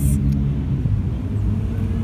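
Steady low rumble of road traffic, with a vehicle engine running nearby, starting with a brief click.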